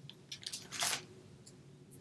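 Hands handling craft paper pieces and a clear plastic stamp packet on a cutting mat: a few faint clicks and one brief rustle a little under a second in.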